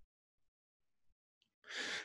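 Near silence, then near the end a short breath drawn in by the speaker just before he talks again.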